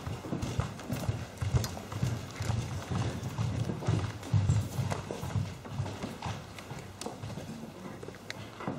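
Irregular low thuds and knocks, a clip-clop-like pattern, with faint music beneath.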